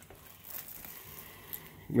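Faint, soft handling sounds: popcorn being picked from a plastic tub and dipped into a cup of salsa, with a couple of small soft bumps in a mostly quiet room.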